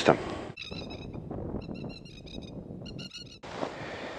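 Animal calls: three short runs of rapid, high chirps about a second apart.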